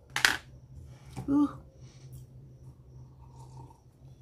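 A short sharp clatter just after the start, a woman's brief "ooh" about a second in, then faint handling sounds as she picks up a tumbler to drink water.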